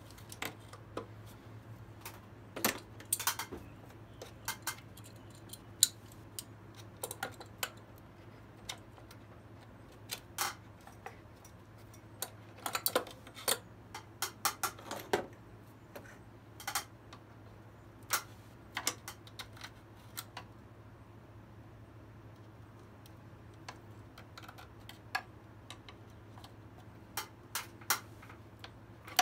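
Irregular sharp metallic clicks and snaps of a hand tool cutting a factory crimp clamp off a rubber vacuum hose and working at the hose, over a faint steady low hum.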